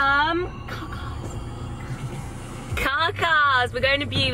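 A woman talking in a high, sing-song voice inside a car cabin, with a pause in the middle where only a low steady hum is heard.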